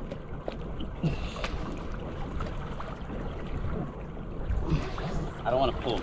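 Water washing and lapping at the waterline under a steady low rumble of wind on the microphone, as the boat creeps along on its trolling motor pushing water across a landed tarpon's gills to revive it. A few words are spoken near the end.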